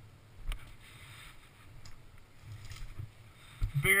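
Dirt bike engine running low and slow, a faint uneven rumble, with a single knock about half a second in. A man's voice starts at the very end.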